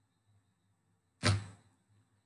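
Near silence, broken about a second and a quarter in by one short syllable-like sound from a man's voice that fades within a third of a second.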